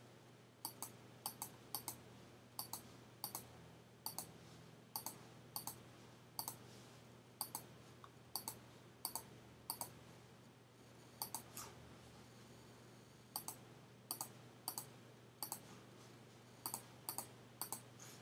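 Computer mouse button clicked repeatedly, mostly in quick press-and-release pairs at irregular intervals of about a second, as a paint brush is dabbed onto an image stroke by stroke. The clicks pause for a couple of seconds in the middle.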